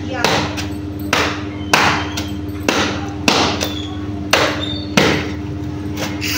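A wooden washing bat (mogri) beating wet laundry by hand, a sharp thwack about every half second to second, some nine strikes at an uneven pace. A steady low hum runs underneath.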